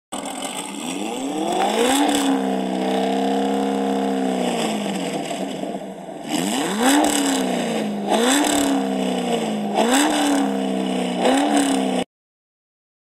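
A car engine revving: its pitch climbs, holds high for a couple of seconds and falls back, then from about six seconds in it accelerates hard through four quick upshifts, each a rising note that drops abruptly at the shift. It cuts off suddenly at the end.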